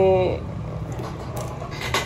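Low steady rumble of motorbike traffic from the road, with a few light clicks and taps as a fishing rod is handled and raised. A drawn-out spoken word trails off at the very start.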